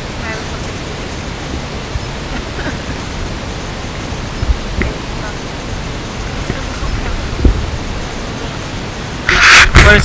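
Steady wind rushing over the camera microphone, with faint voices in the background. Near the end there is a loud rustling rush, then a cut.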